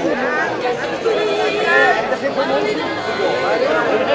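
Chatter of a large crowd of diners talking at once, many voices overlapping.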